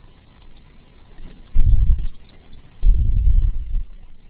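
Two bursts of low rumble on a microphone, the first about half a second long a second and a half in, the second about a second long shortly after.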